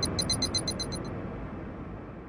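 Electronic noise sound effect: a steady rushing hiss with a rapid, even high ticking of about ten a second that stops about a second in, then the hiss slowly fades.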